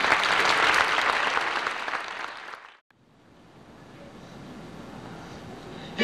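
Audience applause in a school hall as a song ends, fading and cutting off abruptly about halfway through; after that only a faint hiss of room noise.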